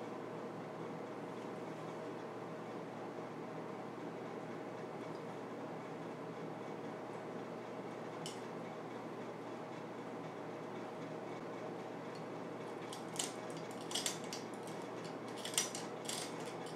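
Scissors cutting through trampoline cloth: a single snip about halfway through, then a quick run of snips and clicks of the blades near the end, over a steady faint hum.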